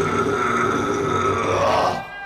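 Grindcore band live: a guttural, burp-like growled vocal held over sustained distorted guitar and bass, with the drums eased off. The music cuts off right at the end.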